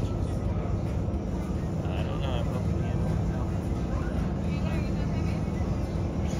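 Steady low rumble of outdoor ambience, with faint, indistinct voices around two seconds in.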